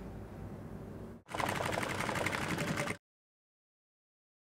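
Industrial lockstitch sewing machine stitching a seam in one short burst, a rapid even clatter that starts about a second in and stops abruptly near three seconds. Before it there is only a low steady hum, and after it the sound cuts out completely.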